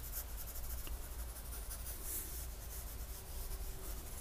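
Pen nib scratching across drawing paper in quick, short hatching strokes, faint and steady.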